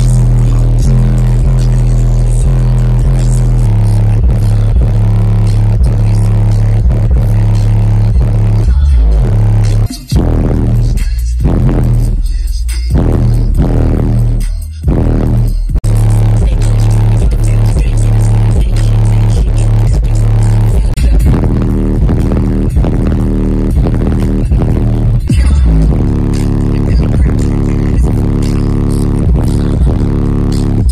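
Bass-heavy music played at extreme volume through two 15-inch car subwoofers in a large custom box, driven by an 8000-watt amplifier and heard from inside the vehicle's cabin. The low bass notes dominate, pushing the bass meter to about 138 to 142 dB. The bass cuts out briefly a couple of times near the middle.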